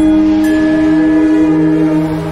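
Music: a loud held chord of several sustained notes, with the lower note stepping down and a higher note joining about half a second in.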